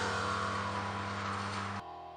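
Closing rock music's last held chord ringing out and slowly fading, dropping away sharply near the end.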